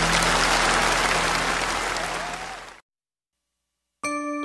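Audience applause at the end of a song, fading out and cutting off into silence a little under three seconds in.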